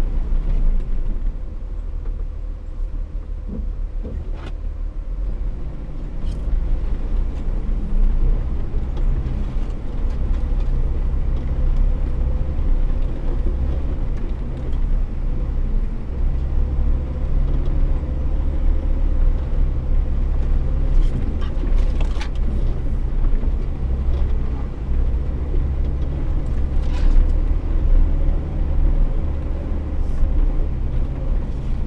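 Four-wheel-drive vehicle driving slowly along a snow-covered trail: a steady low engine rumble, with a few sharp knocks, one about four seconds in and more past twenty seconds.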